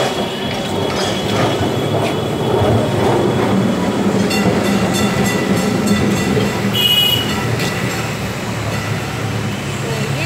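Electric street tram passing close by on its rails: a steady rumble with rapid clicking in the middle and a short shrill sound about seven seconds in, over city street traffic.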